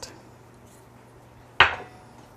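One sharp knock on a glass mixing bowl holding a wooden spoon, near the end, ringing out briefly as the bowl is taken up for stirring.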